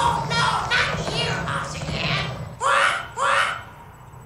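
Children's voices shouting and calling out, with two loud calls about two-thirds of the way through.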